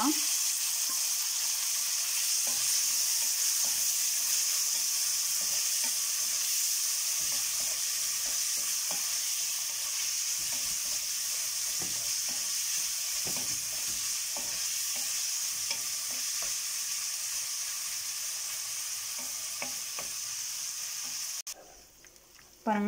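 Chopped onion and tomato sizzling in hot oil in a stainless steel kadai, a steady frying hiss, while a wooden spatula stirs with light scrapes and taps against the pan. The sizzle cuts off suddenly just before the end.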